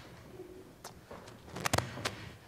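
Static on the church sound system's microphone feed: sharp crackling pops, one about a second in and a quick cluster of them near the end.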